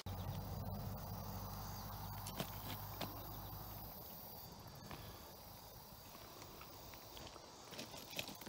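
Faint outdoor ambience: a low steady hum that stops about four seconds in, with a few faint clicks and a light hiss.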